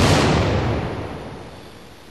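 A single bomb explosion: a sudden blast at the start that dies away over about a second and a half.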